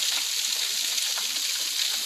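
Steady rushing of water from a 15-metre waterfall, an even hiss with no separate splashes or events.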